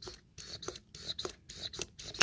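Faint short scrapes and clicks, about three a second, as the piston of a 2012 Mazda 3 brake master cylinder is pushed in and out of its bore by hand, working like normal brakes.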